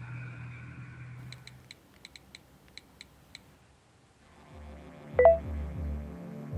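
A quick irregular run of about ten short high electronic beeps, like phone keypad tap tones, over about two seconds. Then music with a pulsing bass comes in, and a short bright chime is the loudest sound about five seconds in.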